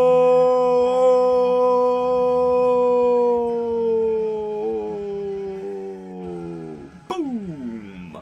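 A man's voice holding one long shouted "Ichiro" call, loud and steady at first, then slowly sinking in pitch, wavering and fading out near the end as his breath runs out, with a quick falling glide about seven seconds in.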